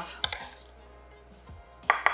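A metal spoon scraping minced garlic off a stainless steel garlic rocker, with one sharp click of spoon on metal just after the start. Near the end, music comes in with quick, evenly repeated notes.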